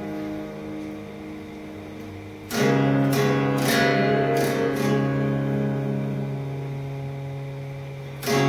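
Cutaway acoustic guitar played fingerstyle. A chord rings out and fades, then about two and a half seconds in a new phrase begins: a low bass note held under picked melody notes that slowly die away.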